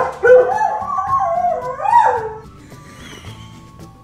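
A dog howling in one long, wavering call that slides down in pitch and stops about two and a half seconds in. It is a distress howl at its owner leaving the house. Background music plays underneath.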